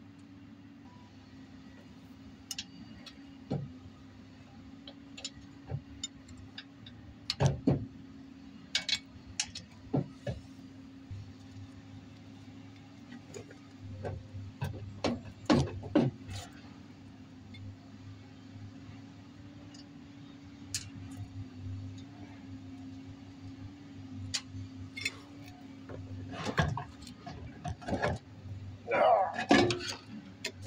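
Scattered metal clunks and knocks as the heavy differential carrier of a G73 truck axle is worked loose with a strap and pulled out of the axle housing, with a denser run of loud knocks and scrapes near the end as it comes free. A steady low hum runs underneath.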